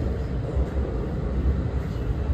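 Steady low rumble of a moving commuter train, heard from inside the passenger car.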